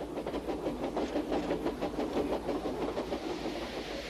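A small train running along track, with a rapid, even rhythmic beat.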